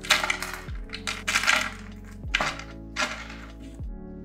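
Handfuls of coarse white drainage granules dropped into a glass terrarium, clattering against each other and the glass in four short bursts, over background music.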